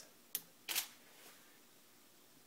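Camera shutter firing for a triggered water-drop shot: a sharp click about a third of a second in, then a longer shutter sound about a third of a second after it.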